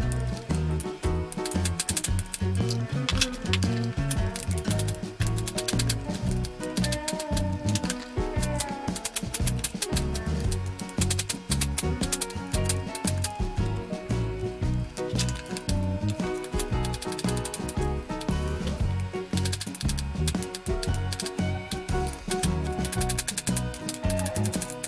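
Background music with a steady beat, over a knife chopping pattypan squash on a plastic cutting board in quick repeated taps.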